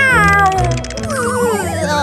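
A cartoon kitten's meowing cry of dismay: one long falling meow, then a wavering, warbling wail, over background music.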